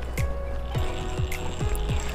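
Background music with a deep beat about twice a second.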